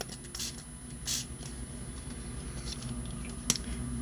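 Two short hisses of a craft-ink pump spray bottle misting onto paper, followed by a single sharp click near the end.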